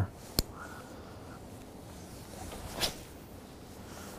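Casting a spinning rod and reel: a sharp click about half a second in, then a brief swish of the rod near three seconds in, over a faint steady outdoor background.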